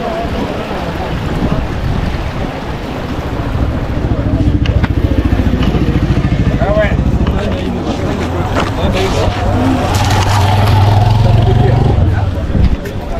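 Rushing of a muddy flooded stream, then a motorcycle engine running close by. Its low, pulsing drone gets louder from about four seconds in and is strongest near the end.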